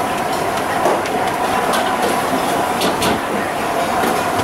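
Steady mechanical roar of a busy restaurant kitchen, with a few light slaps as naan dough is stretched by hand.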